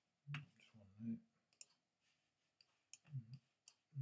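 Quiet clicking of a computer mouse: about six sharp clicks in the second half, with a low, muffled mumble of a voice near the start and again a little after three seconds.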